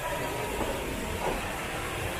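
Steady background hiss of a large store's room noise.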